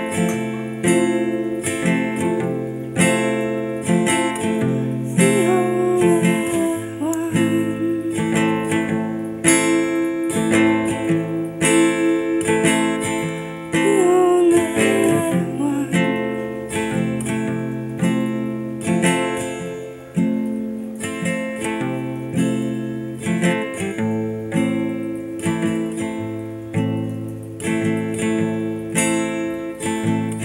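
Cutaway acoustic guitar strummed in a steady rhythm of chords, about two strums a second.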